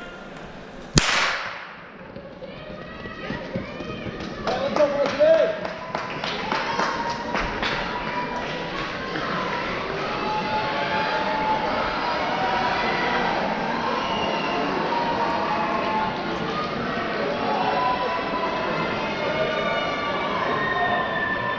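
A starting pistol fires once about a second in, its crack ringing through the large indoor arena. Spectators then clap and cheer, the crowd noise swelling and holding steady as the race runs.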